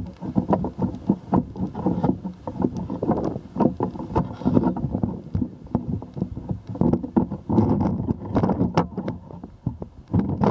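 Handling noise from a camera raised on a pole: irregular knocks and rattles as the pole is moved, with wind buffeting the microphone.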